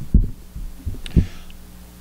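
A few dull, low thumps picked up by the pulpit's close microphone, one near the start and two about a second in, with a light click between them.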